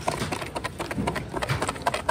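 Paper raffle tickets shaken and tumbled inside a cardboard box: a rapid, irregular run of rustles and light taps.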